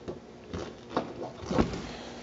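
Hands working the latch and canopy frame of a Messerschmitt KR200's body: three short knocks and clicks, the firmest and deepest about a second and a half in.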